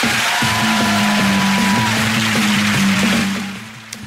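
TV panel show's closing theme music, with sustained low notes, fading down near the end.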